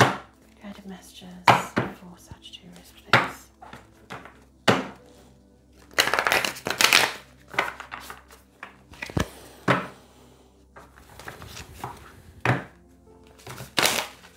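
A deck of tarot cards being shuffled by hand and knocked against the tabletop: sharp taps every second or two, with a denser rustle of cards for about a second around six seconds in.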